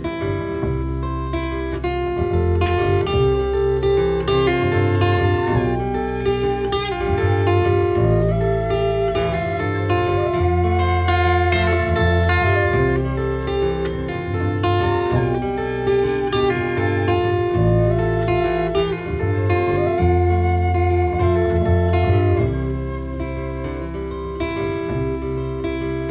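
Acoustic folk band playing an instrumental break: strummed acoustic guitar and plucked double bass carrying a steady bass line, under a gliding lead melody and a light, regular drum beat.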